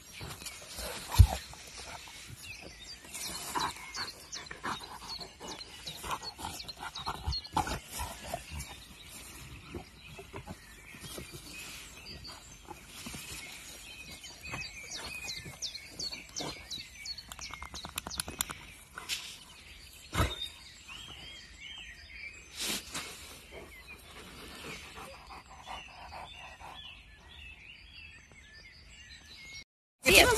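A Rottweiler gnawing on a wooden log and moving through long grass: irregular crunching, clicks and knocks, the loudest a sharp knock about a second in, with faint bird chirps behind.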